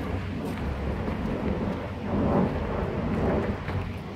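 Wind buffeting the phone's microphone outdoors, a steady low rumble that swells briefly about two seconds in.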